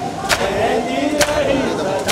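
Men's voices chanting together over matam, the ritual chest-beating of hands on bare chests, whose strokes land in unison about once a second, twice here.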